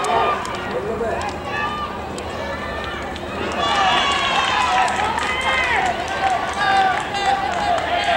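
Several voices shouting and cheering in reaction to a base hit, growing louder about halfway through.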